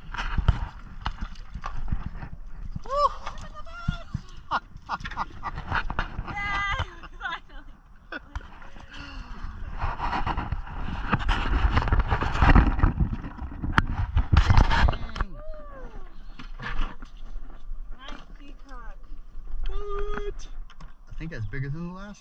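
A hooked peacock bass splashing at the side of a small boat and knocking about as it is landed, with the noisiest stretch about halfway through, under short excited exclamations.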